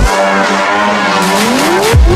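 Techno breakdown: the kick drum and bass drop out while a gliding synth tone bends down and back up in pitch, with hi-hats ticking back in about halfway through.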